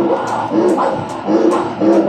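Hand-played conga drums keeping a rhythm of about two strikes a second, with voices over them.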